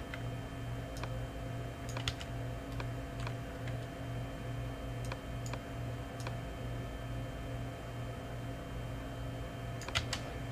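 Steady low electrical hum from the recording chain, with a few scattered faint clicks from computer input while working at the desk.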